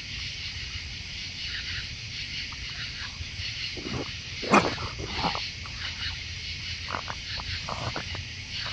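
A group of raccoons feeding close to the microphone: short, irregular sounds of eating and jostling, the sharpest about four and a half seconds in, over a steady high hiss.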